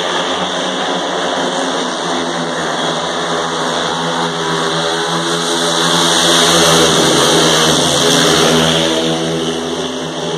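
Speedway bikes' 500cc single-cylinder methanol engines racing around the track, their note wavering as they are throttled through the bends. The bikes get louder as they pass close about six seconds in, then fade a little as they pull away near the end.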